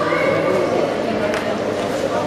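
Hall full of spectators talking over one another, with one voice calling out loud and high near the start and a single sharp knock or clap about midway.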